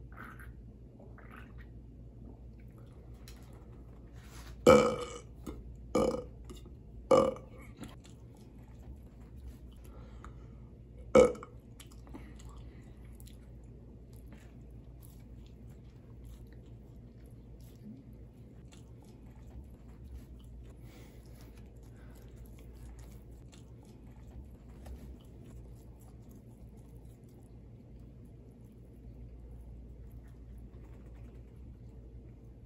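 A man burps loudly four times after gulping carbonated beer from a can: three burps about a second apart, then one more a few seconds later. Faint chewing follows.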